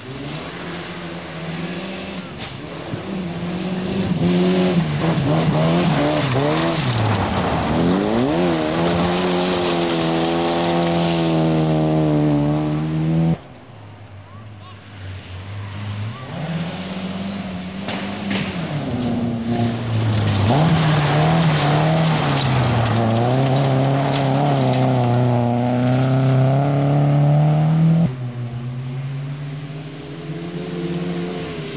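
Rally car engines driven hard on a gravel stage, in two separate passes. Each rises in pitch through the gears, dips as the car brakes into the bend, then climbs again under acceleration. The first pass cuts off suddenly about 13 seconds in, and the second near the end.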